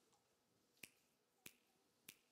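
Near silence broken by two short, sharp clicks, the first a little under a second in and the second about two-thirds of a second later.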